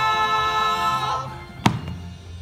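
Several voices holding the last sung chord of a show tune, cutting off about a second in. About half a second later comes a single sharp thump.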